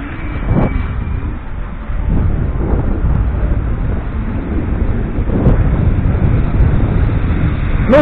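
Wind rumbling on the microphone over street traffic noise, a steady, uneven low rumble with no clear separate events.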